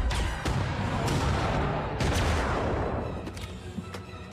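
Animated-series soundtrack: a run of explosions with a heavy deep rumble, several sharp blasts in the first two seconds under orchestral score, the rumble fading away near the end.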